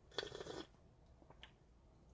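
A short slurping sip of coffee from a mug, lasting about half a second, followed by a couple of faint clicks.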